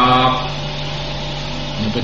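Steady electrical hum and hiss in a recording of a man's talk. His voice finishes a phrase in the first half-second and starts again just before the end.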